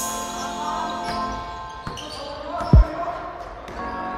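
Intro sting for an animated logo: a sudden deep hit opens it, steady sustained tones hold underneath, and a second short low thud like a basketball bounce comes near the three-quarter mark.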